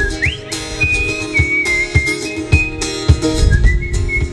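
Acoustic guitar strumming with a whistled melody over it. The whistle slides up just after the start, holds and steps down through a few notes, then comes back for a short note near the end.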